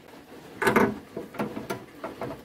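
Knocks and rattles of a loose window guide rail being worked by hand inside a car door. It wobbles but will not come out. There are a few short clatters in the second half.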